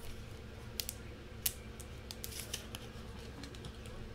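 Trading cards being handled on a tabletop: a scattering of light clicks and snaps as cards are flipped and slid, the sharpest about a second and a half in.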